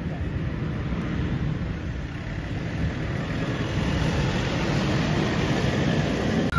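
Motor vehicle running close by, a steady low rumble with hiss that grows slowly louder.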